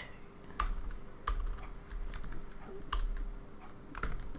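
A few separate keystrokes on a computer keyboard, spaced roughly a second apart.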